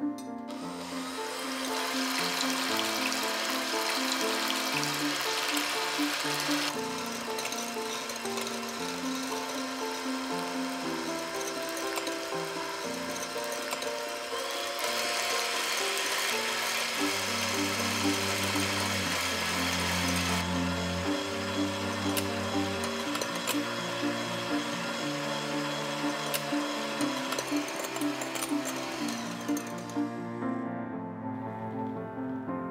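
Electric hand mixer whirring as its beaters whip egg whites in a glass bowl, from foamy to stiff glossy peaks; its whir steps down and up in loudness a few times. Background piano music plays throughout.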